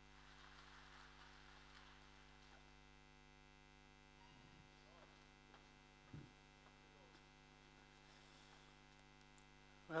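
Near silence with a steady electrical mains hum and a faint knock about six seconds in.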